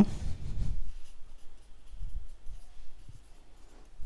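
A pen writing, with short irregular strokes and pauses between them.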